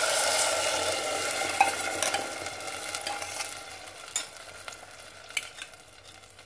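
Dal and its liquid poured from a container into a metal pot of water, a splashing pour that tails off over a few seconds, with a few light clicks.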